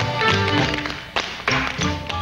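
Two dancers' tap shoes striking the floor in quick rhythmic steps over band music. A little past a second in, the music thins and a few sharp taps stand out.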